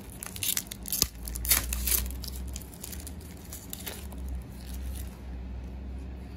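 A foil trading-card pack being torn open, its wrapper crinkling in several short bursts in the first two seconds, then quieter handling with one more crinkle near four seconds. A low steady hum runs underneath.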